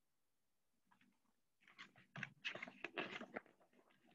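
Close rustling and scraping of a picture book being handled and held up to the microphone, an irregular cluster of small scuffs lasting about two seconds in the middle, otherwise near silence.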